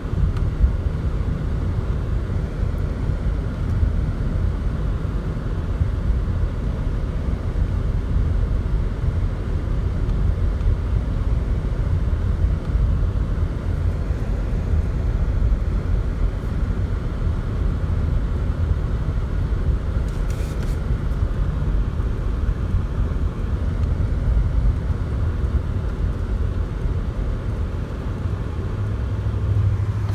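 Steady low rumble of a car's road and engine noise heard from inside the cabin while driving. A deeper engine hum swells near the end.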